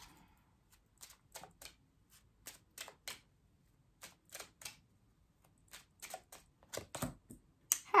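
A deck of tarot cards being shuffled by hand: a run of short, irregular card slaps and flicks, sometimes in quick clusters.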